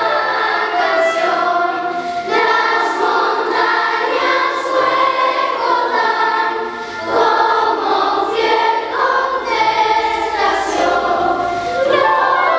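Large children's choir singing a Christmas carol in unison and parts, with brief breaths between phrases about two and seven seconds in.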